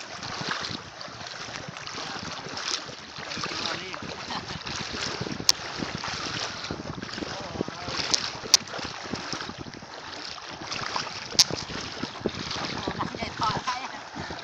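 Water splashing and sloshing as several people wade through shallow lake water, with wind rumbling on the microphone. A few sharp clicks stand out above the rushing, about five, eight and a half and eleven seconds in.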